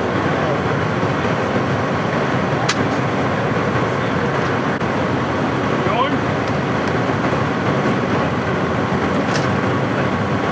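Steady engine noise of idling emergency vehicles, with indistinct voices of responders and two sharp clicks, one about three seconds in and one near the end.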